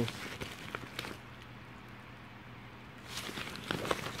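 Handling rustle and light clicks of a nylon packing cube and a cardboard product card being moved in the hands close to a phone microphone. There are a few clicks in the first second, a quieter stretch in the middle, and more rustling near the end.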